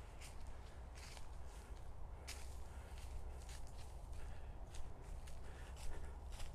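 Footsteps crunching on a sandy trail strewn with dry fallen leaves, at a steady walking pace, over a low steady rumble.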